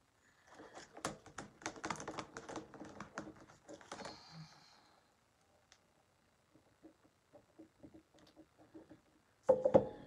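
Quick plastic clicks and taps of stamping supplies being handled: a clear acrylic stamping block and a clear stamp being set back in its plastic case, busiest in the first four seconds or so. After a quiet stretch with a few faint taps, a louder clatter comes near the end.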